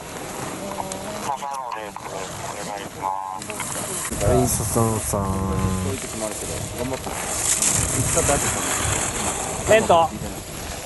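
People's voices calling out in short shouts, with one longer held call around five seconds in, over a steady outdoor background with a high hiss later on.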